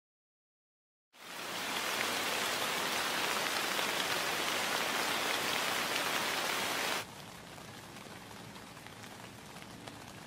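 Heavy rain falling steadily, fading in quickly about a second in. About seven seconds in it drops abruptly to a quieter steady rain.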